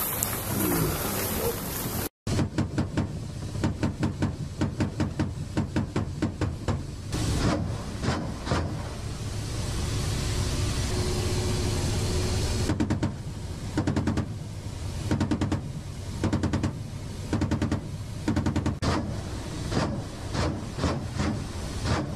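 Cockpit sound of an attack helicopter: steady engine and rotor noise broken by repeated bursts of rapid reports, about four a second, from its cannon firing at ground targets. The sound cuts out briefly about two seconds in, just before the firing starts.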